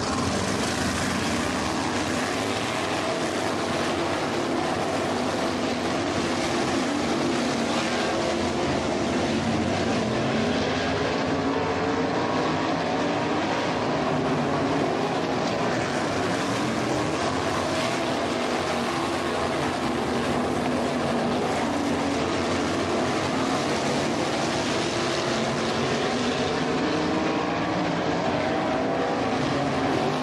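Several RaceSaver sprint cars' 305 V8 engines running together on a dirt track, a steady blended drone whose pitches waver up and down as the cars circle.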